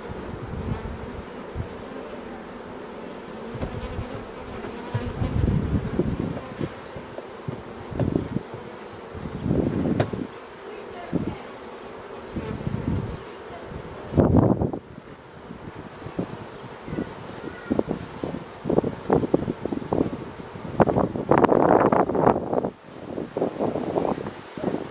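Honeybees buzzing steadily around an opened hive, with knocks and rustles as the wooden hive parts are handled and closed up. The loudest knocks come about two-thirds of the way through and near the end.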